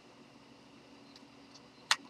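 Handling noise as a lighter is pried out of its tight foam case: mostly quiet with a faint steady hum, then one short sharp click near the end.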